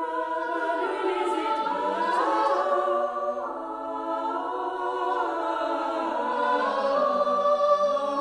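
Closing music of choral singing: several voices holding long notes that shift slowly in pitch.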